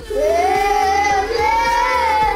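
Young children singing the word 'blue' twice as two long held notes over backing music.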